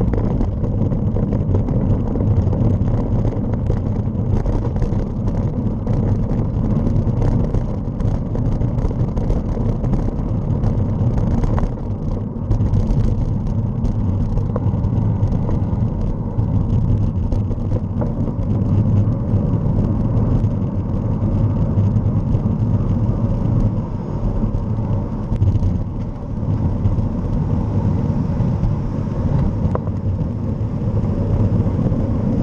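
Wind rushing over a mounted camera's microphone, with steady road noise from riding along a street.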